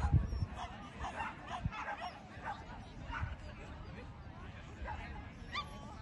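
A dog barking and yipping in short calls at intervals, over faint voices in the background.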